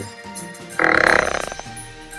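A loud, drawn-out burp lasting under a second, starting a little before the middle, over background music.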